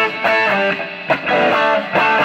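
1967 Gibson SG Junior electric guitar played through a 1955 Fender tube amp, a riff of strummed chords that strike about every half second.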